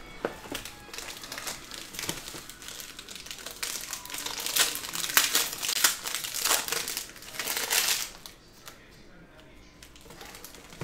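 Plastic shrink-wrap on a trading card box crinkling as it is torn off and crumpled by hand, a dense run of crackles that dies down about eight seconds in.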